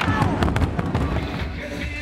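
Burundian drum troupe beating large upright drums with wooden sticks: loud, sharp strikes that thin out and fade in the last half second.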